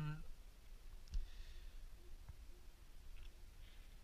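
Faint handling noise from a plastic digital photo frame being moved on a tabletop by hand: one light knock about a second in, then a few soft clicks.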